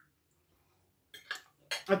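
A second of near silence, then a few quick clinks of metal cutlery against a plate, after which a woman starts to speak near the end.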